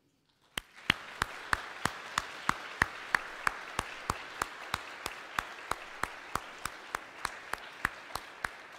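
Congregation applauding. One pair of hands close to the microphone claps steadily, about three times a second, over the general applause. It starts about half a second in.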